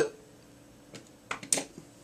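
Several light clicks and taps of small hard-plastic toys being handled, starting about a second in.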